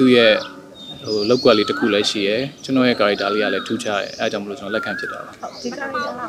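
A man speaking, with birds calling in the background: several short, high whistled notes that rise and fall, heard between his phrases.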